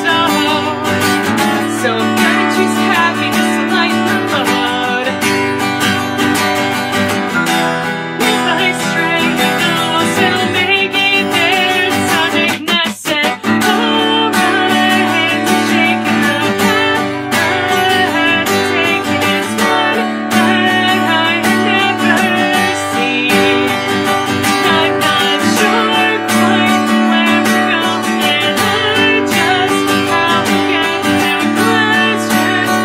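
Acoustic guitar strummed in a steady rhythm, with a brief break about halfway through.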